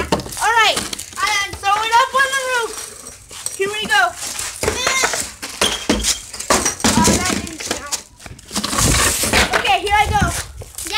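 High-pitched wordless voices, several drawn-out squeals or calls that rise and fall, with a couple of sharp knocks around the middle.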